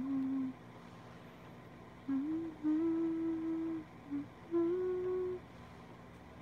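A woman humming a few short phrases of long held notes, with brief pauses between them.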